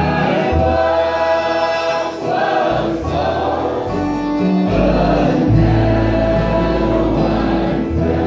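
Live bluegrass gospel harmony singing: several voices holding long notes together over an acoustic string band of guitars, banjo and fiddle.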